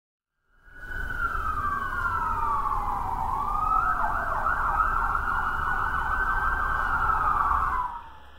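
Emergency vehicle siren: a slow wail sweeping down and back up, which switches about four seconds in to a fast yelp of roughly three sweeps a second, over a low rumble. It cuts off suddenly near the end.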